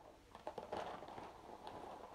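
Faint handling noise: a few light clicks and rustles, mostly in the first second, from a plastic bag of sunflower seeds being handled.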